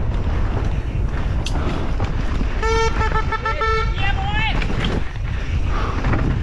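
Mountain bike descending a rough dirt trail at race speed: steady wind rush on the helmet camera's microphone with rattling from the trail. About halfway through, a spectator's horn sounds one held note for about a second, followed by a short shout.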